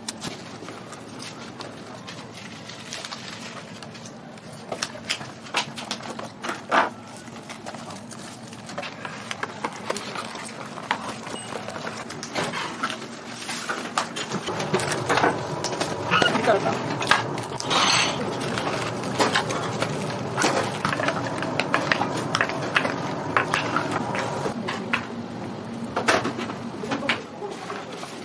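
Kitchen packing clatter: repeated sharp clicks and knocks of plastic food boxes and lids being handled, with indistinct voices in the background that grow busier about halfway through.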